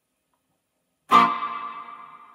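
A First Act electric guitar chord struck once about a second in, played through a Wampler Faux Spring Reverb pedal into a Fender Mustang I amp. It rings out and slowly dies away, carrying the pedal's spring-style reverb tail.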